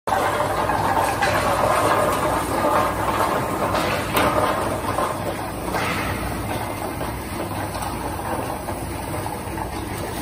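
Biscuit packing machine running: ring biscuits clatter as they tumble onto and slide around a spinning stainless-steel feed turntable, over a steady machine hum, with a few sharper clicks. The clatter eases after about five seconds, leaving a quieter steady running noise.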